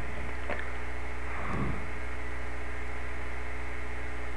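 Steady electrical mains hum with hiss, with two faint brief sounds in the first two seconds.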